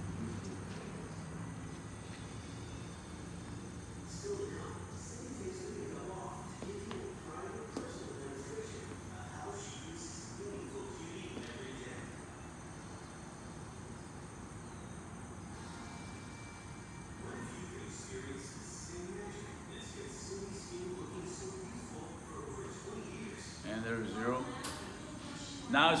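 Low steady background noise with faint, indistinct voices.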